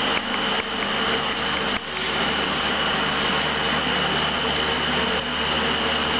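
Steady mechanical hum under a hiss, with a thin high whine above it and a faint knock about two seconds in.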